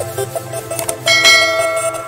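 A bell-like notification chime rings out about a second in and slowly fades, over background music.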